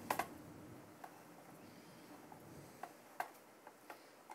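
Faint, scattered clicks of a screwdriver working the mounting screws of a tower CPU cooler, metal on metal. The clearest click comes right at the start, then a few more near the end.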